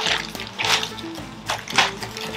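Stiff, plastic-like gift-wrap paper rustling and crinkling in several short bursts as a large sheet is handled, over background music.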